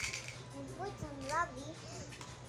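A small child's voice making short, wordless sing-song sounds that rise and fall about a second in, over a steady low hum, with a brief noise right at the start.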